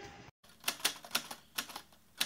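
Typewriter keys clacking, about five irregular strikes, as a sound effect on an end title. Just before them the outdoor ambience cuts off abruptly.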